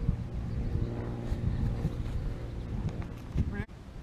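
Wind buffeting the microphone: a low rumble with a faint steady hum above it. It cuts out briefly near the end.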